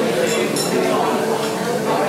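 A quick run of light clinks of glassware and cutlery about half a second in, over the steady chatter of a busy dining room.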